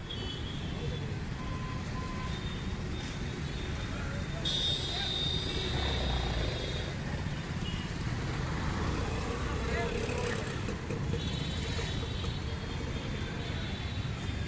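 Busy city street traffic: a steady rumble of motorbike and car engines passing close by, with higher steady tones rising over it about four seconds in and again near the end.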